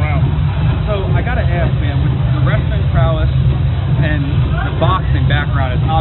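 Men talking in conversation over a steady low rumble.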